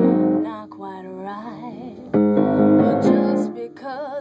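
Piano accompaniment: a chord struck about two seconds in, after one just before, each left ringing, with a woman's sung notes wavering in between and again near the end.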